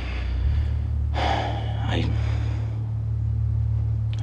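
A man breathing out heavily once, about a second in, over a steady low hum.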